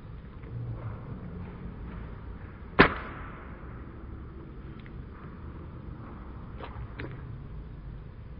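Claw hammer striking an orange on a hard floor: one sharp smack about three seconds in, followed by two faint taps near the end.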